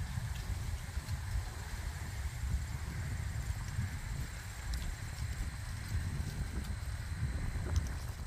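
Wind buffeting a phone's microphone outdoors, an uneven low rumble that rises and falls, with a faint steady high tone behind it.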